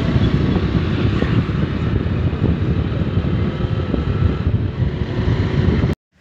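Riding pillion on a moving two-wheeler: heavy wind buffeting the microphone over engine and road noise. It cuts off suddenly near the end.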